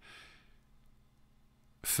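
A soft breath from the narrating voice in a pause between read sentences, followed by near silence; the reading voice starts again near the end.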